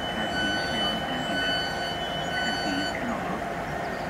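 Door-closing warning alarm on a Class 150 diesel multiple unit: a steady high tone with a lower beep pulsing about once a second, stopping about three seconds in, the signal that the doors are shutting before departure. The diesel engine idles underneath.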